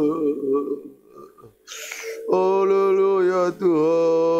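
A man's voice singing long, drawn-out 'oh' notes into a microphone: one held note fades out within the first second, and after a short near-quiet gap and a brief breathy hiss, a steady held note starts a little past the middle, breaks briefly, and goes on with a wavering pitch.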